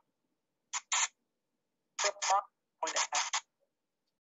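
Short, choppy bursts of thin, voice-like sound from a ghost box (spirit box) sweeping through radio stations, heard over a Skype call. The bursts come in three brief clusters with dead silence between them.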